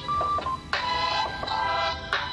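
Smartphone ringing with a musical ringtone, a tune of repeating chords, as an incoming call goes unanswered.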